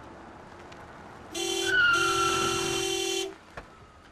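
Car horn honking in the middle of a near-collision: a short blast, then a long one of about a second and a half, with a falling squeal over the first part.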